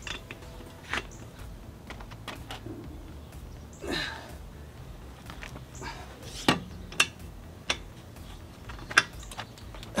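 Scattered sharp metallic clicks and clinks of a 3D-printed aluminum socket and a long-handled wrench working a car's lug nut, as a nut torqued to 120 lb-ft is loosened.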